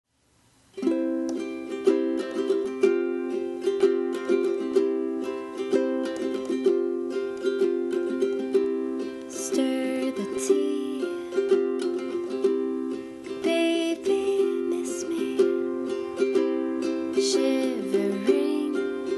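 Enya concert ukulele playing a steady chord accompaniment as the song's instrumental intro, starting about a second in.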